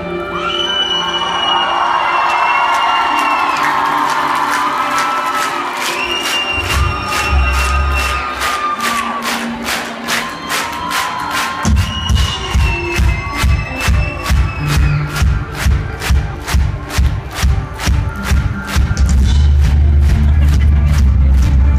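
Rock band playing live, heard from within a cheering crowd: long held high notes over crowd noise at first, with bass coming in. From about halfway a steady pulsing beat of about two a second takes over and builds.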